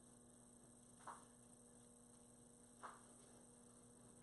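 Near silence with a steady low electrical hum, and two faint, brief rustles of cloth as a top is pulled on over the arms, about a second in and near three seconds.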